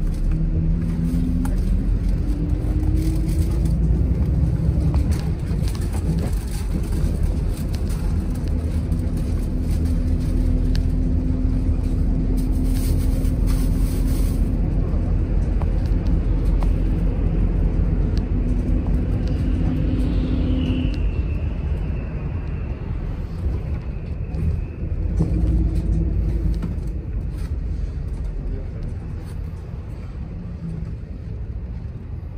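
City express bus on the move: steady engine and road rumble, with a pitched drivetrain whine that rises as the bus gathers speed in the first few seconds, holds, then fades about two-thirds through. A faint high squeal is heard around the same point.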